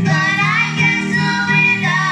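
A worship song sung by a woman and two girls together through handheld microphones, the voices held and gliding from note to note without a break.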